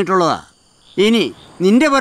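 A man speaking Malayalam dialogue in three short phrases. Behind the voice runs a faint, steady, high chirring of crickets.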